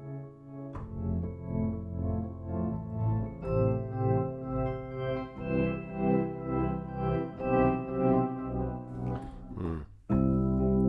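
Sampled Suitcase 73 electric piano playing a sustained chordal melody loop, processed in a Kontakt sampler instrument. The level swells about twice a second, and a short noisy whoosh comes just before the end.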